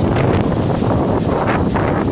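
Strong wind buffeting the microphone in uneven gusts.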